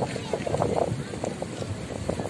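A man speaking into a public-address microphone, with short bursts of speech and brief pauses.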